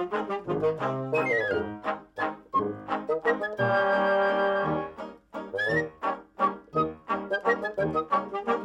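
Music from a small dance band with brass and reeds, playing quick, bouncy staccato notes. About halfway through, the band holds a chord for roughly a second, then the tune picks up again.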